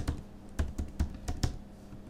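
Typing on a computer keyboard: a string of irregular keystrokes, about seven or eight in two seconds.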